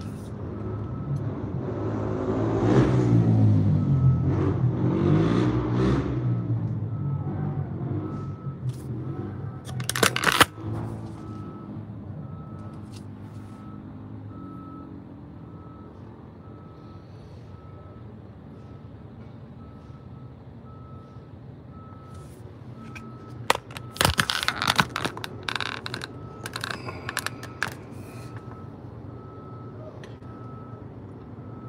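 Steady road and engine noise inside a moving car. A loud swell of shifting pitched sound rises and falls over the first six seconds, with a sharp knock about ten seconds in. A faint beep repeats at an even pace throughout.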